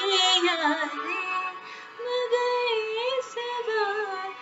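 A woman singing a Hindi film song in two long, ornamented phrases with wavering held notes, with a short breath just before the middle.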